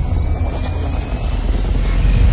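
Deep, steady cinematic rumble from a logo-intro sound effect, with a faint rising whistle above it.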